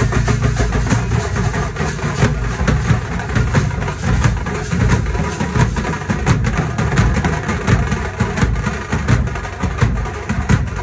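Live street drum band playing a fast, loud rhythm: a big bass drum beaten with a stick and smaller drums struck in rapid strokes.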